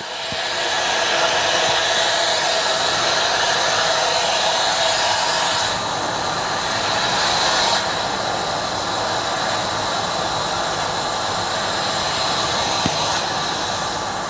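Steady rushing hiss of water forced through a lever-operated valve that is being closed to throttle the flow from a Grundfos Hydro Multi-E booster set, with its CR3-10 pumps running under it. The hiss brightens for about two seconds from roughly six seconds in, then settles a little quieter.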